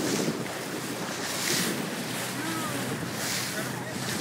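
Water washing past a small boat's hull, with wind on the microphone. Three brief hissing splashes come as dolphins surface alongside.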